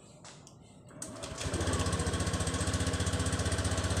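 A Honda automatic fuel-injected scooter's engine is started on its ACG starter-generator about a second in, catches almost at once, and settles into a steady, evenly pulsing idle. The electric start now works after the starter's parts were cleaned and sanded.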